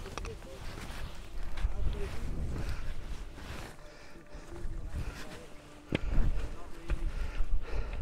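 Gusting wind buffeting the microphone in uneven low surges, with footsteps on rock and a sharp click about six seconds in.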